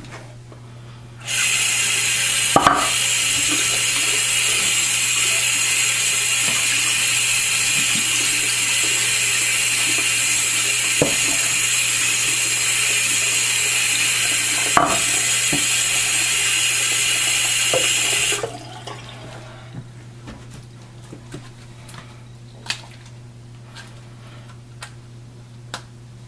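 Bathroom sink tap running full onto a telescope's glass primary mirror lying in the basin, a steady rush of water that starts about a second in and cuts off about two-thirds of the way through. Afterwards only small knocks and drips of handling the wet mirror, over a faint low hum.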